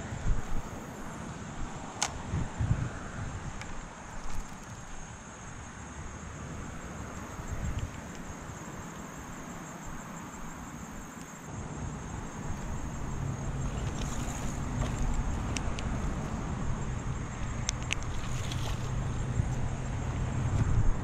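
Wind buffeting the microphone in irregular low rumbles, with a few sharp clicks. From about twelve seconds in, a steady low hum joins and the sound gets louder.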